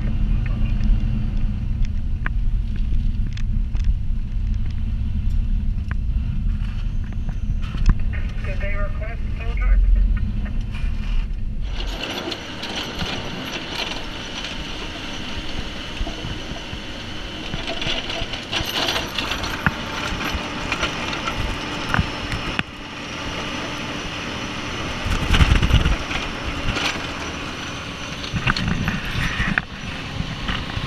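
Heavy low drone of a Sterling plow truck's diesel engine heard from inside the cab. About twelve seconds in, it gives way to a loud rushing hiss of wind and snow thrown off the plow blade, heard from outside the truck, with a brief louder surge near the end.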